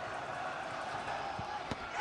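Steady stadium crowd noise, with a single sharp thud near the end as the penalty taker's foot strikes the soccer ball.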